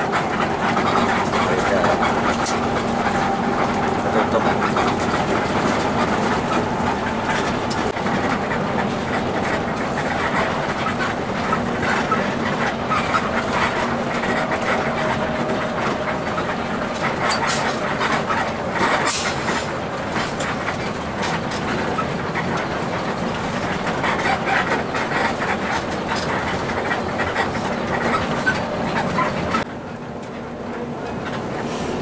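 Cabin sound of an intercity bus on the move: a steady engine hum and road noise, with the body and fittings rattling and clicking.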